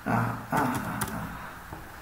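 A man's voice making brief wordless sounds, with a few sharp clicks about half a second and a second in.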